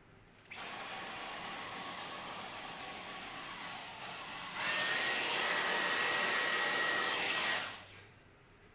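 A cordless stick vacuum cleaner starts about half a second in and runs steadily, sucking dust out of an open desktop PC case. About halfway through it gets louder, with a high steady whine, then cuts off just before the end.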